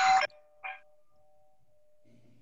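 A two-note chime, higher then lower, ringing out and fading over about a second and a half. It overlaps the tail of a man's last word at the start.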